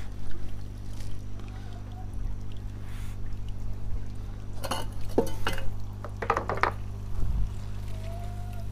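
Water pouring steadily in an aquaponics system over a low, steady hum. A few brief clicks and rustles come about five and six seconds in, with a low thump near the end.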